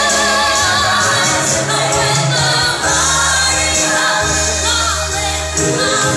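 A young girl singing solo into a microphone, holding long notes with vibrato, over an instrumental backing track through the hall's loudspeakers.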